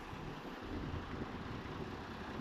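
Steady low rumble of street traffic, with a vehicle engine running nearby.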